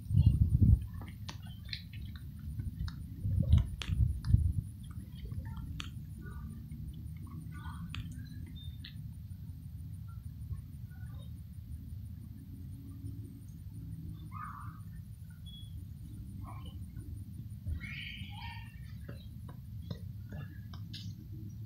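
Outdoor ambience: a steady low rumble with scattered short bird chirps. A few heavy bumps in the first seconds from the phone being handled and set down.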